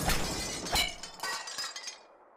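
Sound effect of glass shattering: a scatter of sharp breaking impacts with ringing, tinkling shards, dying away near the end.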